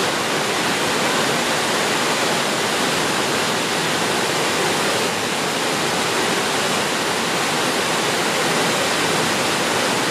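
The Triberg Waterfalls' cascades pouring over mossy rocks into a pool: a steady, even rush of falling water.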